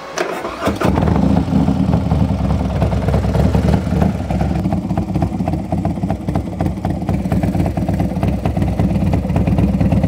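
A 2019 Harley-Davidson Street Glide's tuned V-twin, running through a Burns Stainless exhaust, is started: it cranks for under a second, catches, and settles into a loud idle.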